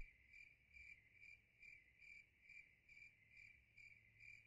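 Faint cricket chirping, a short high chirp repeated evenly about twice a second, as the music cuts off.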